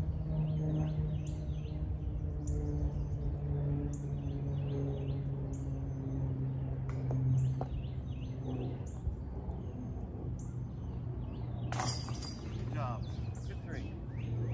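Birds chirping over a steady low drone, with a brief sharp clatter about twelve seconds in.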